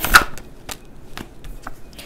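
A deck of tarot cards being shuffled by hand, with one loud riffling burst just at the start, then a few light clicks of cards being handled.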